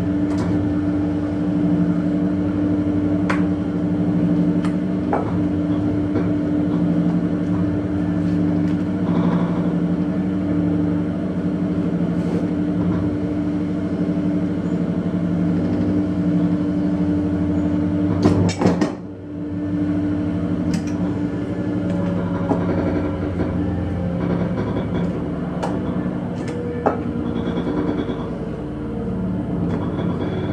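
Swing-arm hydraulic clicker press running with a steady motor-and-pump hum. About two-thirds of the way through, a short cluster of sharp knocks as the press head comes down on the steel-rule cutting die, cutting the insole board, followed by a brief drop in the hum.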